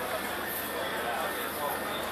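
Indistinct background chatter of many people talking, a steady murmur of voices with no one voice clear.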